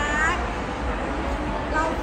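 A woman's high-pitched, drawn-out vocal "la" that rises then falls, ending about a third of a second in. Steady indoor crowd murmur follows, and she starts talking again near the end.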